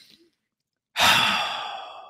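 A person sighing: the end of a breath in, then about a second in a loud, sudden exhale that fades away.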